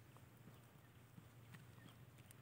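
Near silence: faint outdoor background with a few faint, scattered ticks.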